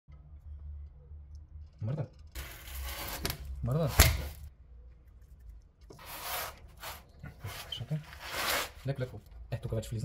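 Screwdriver scraping and prying against a rusty brake pad and caliper, levering the pad to force the caliper piston back: several rasping scrapes, with a sharp metallic click about four seconds in.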